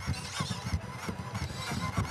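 Quiet stage ambience with faint, irregular soft thumps from small two-legged robots stepping about.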